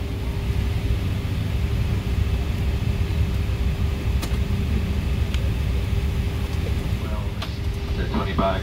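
Steady low rumble of a Boeing 777-300ER cabin parked at the gate, its air conditioning running, with a faint steady hum tone through it. A few light clicks stand out about four and five seconds in, and again near the end.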